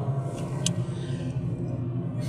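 Steady road and engine noise inside a car's cabin at highway speed, a low, even drone. There is one short click about two-thirds of a second in.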